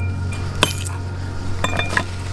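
Metal striking metal: a hatchet hitting the steel head of an old axe as it lies on concrete, to knock the head off its handle. A sharp clink with a brief ring about half a second in, then a quick couple more near the end.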